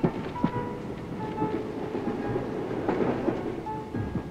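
Moving passenger train heard from inside the carriage: a steady rumble with scattered clicks and knocks.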